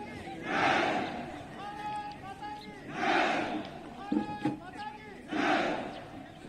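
Call-and-response shouting: one voice holds a drawn-out call and many voices answer with a loud massed shout, three times about two and a half seconds apart.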